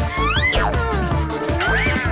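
Background cartoon music with a high, wordless character voice over it: a rising-then-falling 'ooh' in the first half, and another short rising call near the end.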